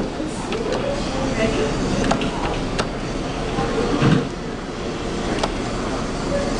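Indistinct background voices over steady room noise with a low hum, and a few light clicks scattered through.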